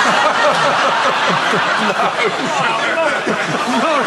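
Audience laughing, many voices at once, loud and sustained.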